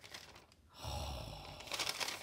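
Quiet crinkling of a thin, translucent printed paper sheet as it is flexed in the hands. A brief soft low sound comes in the middle, and the crackling picks up again near the end.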